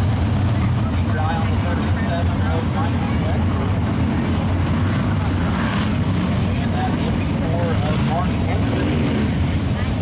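A steady rumble from the engines of a field of UMP open-wheel modified dirt-track race cars, circling together at pace speed before the start of their race.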